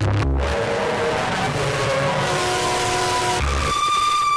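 Techno DJ mix in a breakdown: the kick drum drops out and a dense, hissing noise texture plays under held synth notes that change pitch in steps. About three and a half seconds in, a low bass hit lands and a single steady high synth tone takes over.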